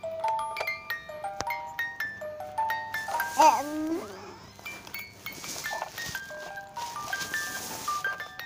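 Electronic tune from a yellow plastic baby's musical bear toy: simple stepped beeping notes played one after another. About three and a half seconds in, the baby makes a short vocal sound over it.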